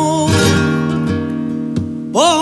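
Flamenco guitar ringing out a strummed chord between sung phrases, with a sharp second strum near the end; the singer's held note trails off at the very start.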